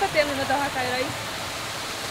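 Steady rush of a small waterfall splashing into a natural pool, with a woman's voice speaking briefly over it in the first second.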